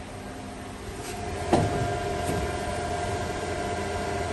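Industrial machinery running with a steady hum and a fixed whine that grows louder after about a second, with one sharp knock about one and a half seconds in.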